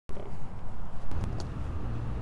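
Street traffic: a passing car's steady low rumble.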